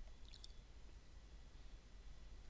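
Near silence: room tone, with a faint click about a third of a second in.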